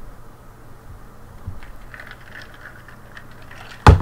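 Quiet room tone with a few faint clicks, then a single sharp, loud thump near the end.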